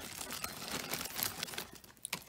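Clear plastic zip-top bag crinkling as it is handled, a run of many small crackles.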